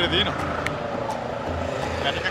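A road vehicle passing by, its engine note sliding slowly down in pitch, with a man's voice briefly at the start and again near the end.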